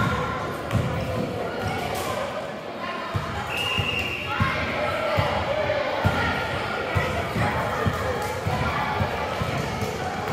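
Basketball bouncing and running footfalls on a hardwood gym floor, a steady run of short thuds, with a few brief high squeaks and indistinct voices of players and spectators echoing in the hall.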